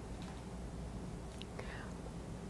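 Quiet room tone of a large hall with a low steady hum, faint rustles and a brief soft whisper near the end from a seated audience.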